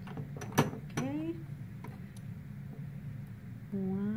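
A single sharp glass clink, a glass pipette tapping a test tube, about half a second in. It is followed by a brief rising voice sound and, near the end, a held hummed tone, over a steady low room hum.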